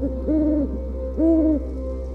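Two short, low hoots over a steady ambient music drone, the second louder.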